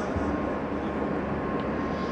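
Steady background noise with a faint steady tone, heard in a pause between recited verses.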